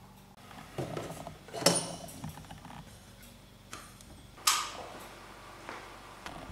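Metal-bracketed rheostats clinking and knocking against each other as they are rummaged in a box: a few separate clatters, the sharpest about one and a half seconds in and another about four and a half seconds in.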